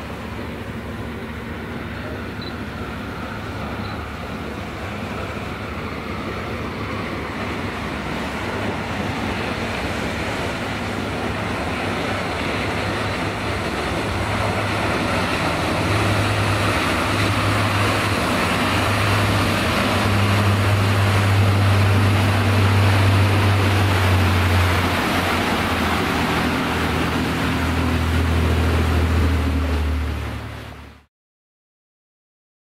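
Shannon-class all-weather lifeboat running at speed: the drone of its twin diesel engines under the rush of spray and wind, growing louder over the first twenty seconds as it closes in.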